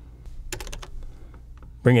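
A few computer keyboard keystrokes, clustered about half a second in, as code is copied and pasted in the editor.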